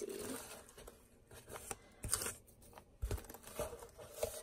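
Cardboard box flaps being pulled open and crinkle-cut paper shred packing rustling under the hands, in a few irregular crackly bursts.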